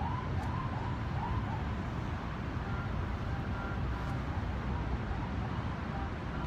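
An emergency-vehicle siren rising and falling about twice a second, fading out within the first couple of seconds, over a steady low outdoor rumble.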